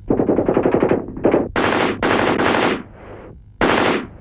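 Machine-gun fire in several bursts of rapid shots. The first burst lasts about a second, followed by shorter bursts, one fainter, with brief pauses between them.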